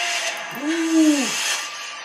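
Horror film trailer soundtrack: a steady hissing background with one low pitched tone that swells up, holds and sinks back over about a second in the middle.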